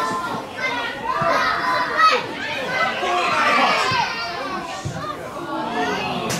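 Several overlapping high-pitched voices shouting and calling during a women's football match, with a sharper loud moment about two seconds in.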